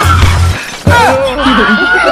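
A sudden loud crash like shattering glass, typical of an added comedy sound effect, strikes about a second in after a heavy thump at the start. Sliding, squeaky tones that bend up and down run through the rest.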